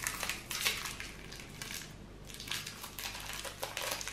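A small candy wrapper being picked open by hand, crinkling in quick, irregular crackles.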